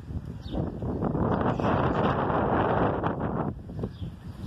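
Wind buffeting a handheld phone's microphone: a loud, steady rumble that cuts off sharply near the end.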